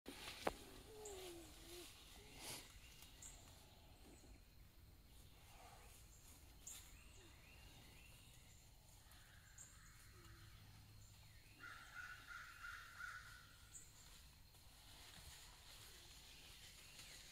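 Near silence: quiet outdoor woodland-edge ambience with faint scattered bird calls, including a longer warbling call about twelve seconds in. A single sharp click comes half a second in.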